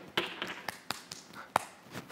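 A handful of sharp, irregular hand taps and slaps, the loudest about one and a half seconds in.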